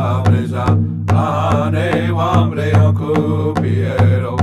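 Native American powwow drum song: a drum struck in a steady beat, about two and a half strokes a second, under a chanting voice singing a wavering melody.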